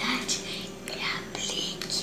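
A young girl whispering in a few short phrases.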